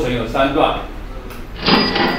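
A short clattering sound effect with a thin bell-like ring, starting about one and a half seconds in, played as new lines of working animate onto a presentation slide. A few words of speech come just before it.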